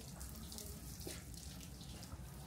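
Water pouring from a watering can onto potted bonsai, splashing unevenly.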